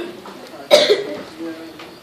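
A person coughs once, sharply, a little under a second in, with faint voices in the room around it.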